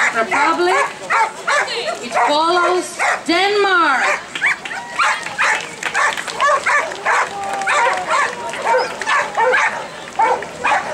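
Many Belgian shepherd dogs barking and yipping over and over, several calls a second, with one long rising-and-falling yelp a little after three seconds in. Voices of the crowd mix in underneath.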